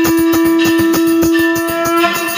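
A conch shell (shankh) blown in one long, steady, loud note over rapid, continuous drumbeats.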